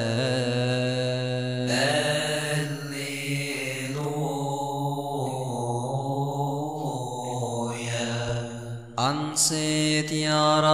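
A voice chanting an Arabic psalm in a long melismatic line on a drawn-out vowel, holding steady notes that step to a new pitch every couple of seconds. Near the end it breaks off briefly and a new phrase begins on a rising note.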